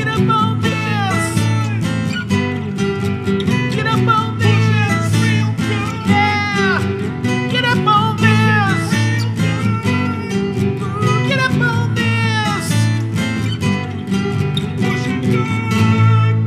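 Instrumental music: an acoustic guitar strummed in a steady rhythm, with a melodic line above it that slides and bends in pitch, ending on a strong final strummed chord.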